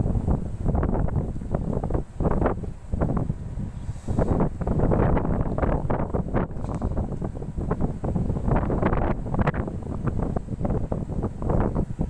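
Wind buffeting the microphone in irregular gusts, with a low rumble underneath.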